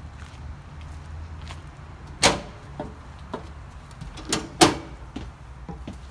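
Footsteps climbing a travel trailer's fold-down metal entry steps and through the doorway: three sharp knocks, one about two seconds in and two close together past the middle, the last the loudest.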